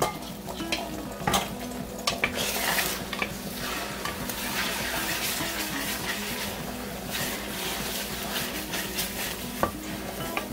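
Beaten eggs sizzling in a hot stainless-steel frying pan while a wooden spatula stirs and scrapes them into scrambled eggs. The spatula knocks against the pan about a second in and again near the end.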